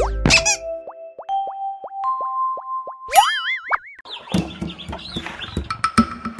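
Cartoon logo jingle: a quick run of short plucked notes that each bend in pitch and step upward, then a whistle that slides up and wobbles, followed by a busier musical texture with low beats.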